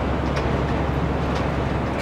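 Steady drone of a truck's engine and tyre and road noise heard inside the cab at highway speed.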